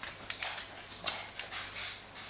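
An Akita and a miniature schnauzer wrestling, making about five short, hissy dog sounds spread over two seconds.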